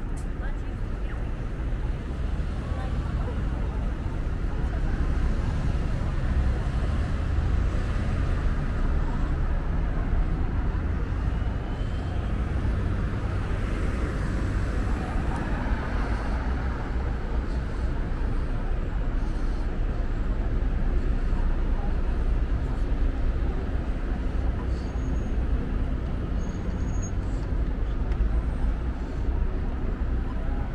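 Steady city road traffic: a continuous low rumble of cars and buses going by.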